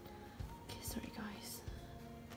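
Faint background music with soft held notes. A few brief, soft rustles come from a leather wallet being handled.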